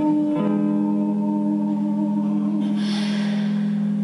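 Electric guitar playing slow, held chords, with the chord changing about half a second in.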